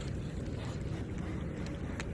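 Low, steady rumble of wind and handling noise on a phone microphone held close to a deer, with no distinct crunches or calls.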